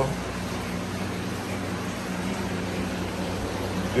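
Aquarium equipment running in a fish room: a steady low hum with an even hiss over it, typical of air pumps and filters.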